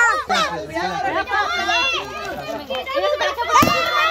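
A group of children talking and calling out over each other, with a brief thump near the end.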